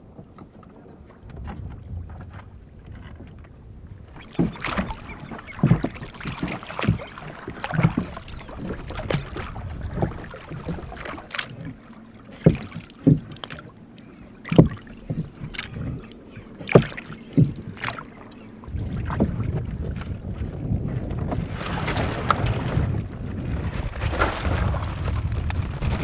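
Small wooden rowboat being rowed with rough wooden pole oars lashed on with rope: a string of irregular wooden knocks and clunks, several a second at times, as the oars work against the boat, with water sloshing. Near the end a steady low rumble of wind on the microphone takes over.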